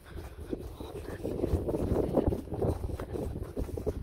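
Wind buffeting the microphone, a rough, uneven rumble that grows louder about a second in.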